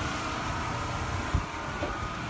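Wind rumbling on the microphone over a steady mechanical hum, with one brief low thump a little over a second in.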